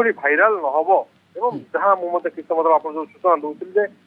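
A man reporting in Odia over a telephone line, the voice thin and cut off at the top like a phone call; speech only.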